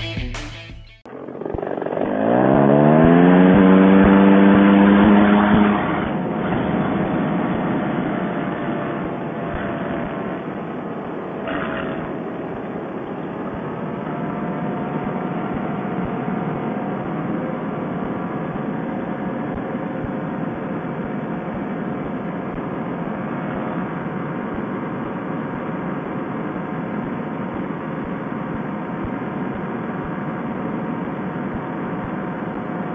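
Paramotor trike engine and propeller throttling up sharply from low revs to full power for the takeoff roll, loudest for a few seconds, then settling into a steady, slightly wavering drone as it climbs out. Heard through a Bluetooth headset microphone, which leaves it thin and cut off in the treble. A few seconds of music end about a second in.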